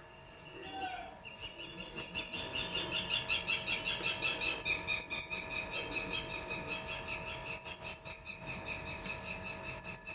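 An animal's rapid, steady series of high-pitched chirps, about six a second, building up over the first couple of seconds and easing slightly near the end.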